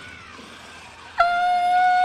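A loud, steady horn-like tone that starts suddenly about a second in and holds one flat pitch for about a second, over a faint background.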